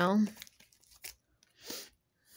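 A woman's voice ends a word, then a short, soft papery swish near the end as a tarot card is slid down onto the cloth-covered spread.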